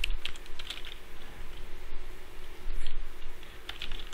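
Typing on a computer keyboard: irregular key clicks in short runs with pauses between, as a word is typed out.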